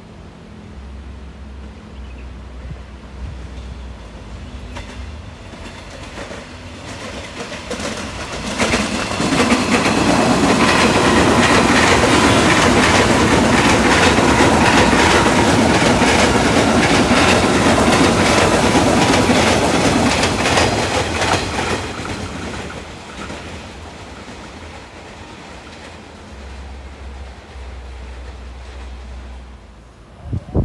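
Commuter electric multiple-unit train passing close by: its wheels clatter over the rail joints, swelling in about eight seconds in, staying loud for some twelve seconds, then fading away.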